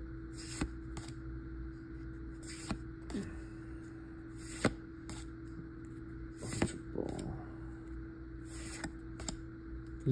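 Trading cards being slid one at a time off a small stack held in the hand, giving a handful of short, sharp clicks and flicks. A steady low hum runs underneath.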